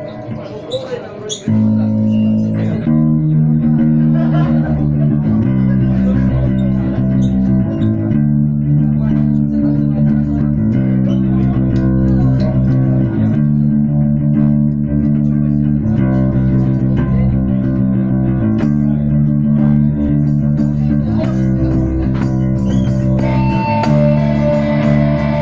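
Live post-punk band starting a song about a second and a half in: the bass guitar plays a repeating line of held notes that change about once a second under electric guitar. A higher guitar line comes in near the end.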